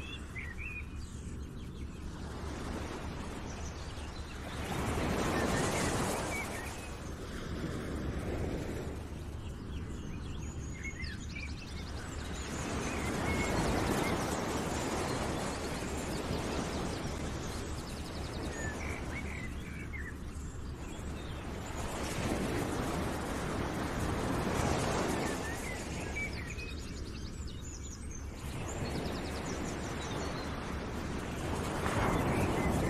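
Nature ambience laid under the slideshow: a steady rushing noise that swells and eases every several seconds, with short bird chirps scattered through it.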